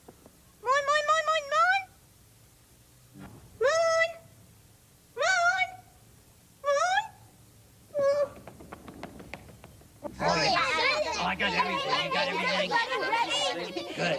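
A Muppet character's high-pitched voice giving five short calls that rise in pitch, with pauses between them. About ten seconds in, several voices start up at once in a busy overlapping chatter.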